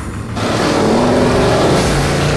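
Chevrolet Camaro's engine revving hard as the car accelerates and speeds past, cutting in suddenly about a third of a second in after a brief beat of music.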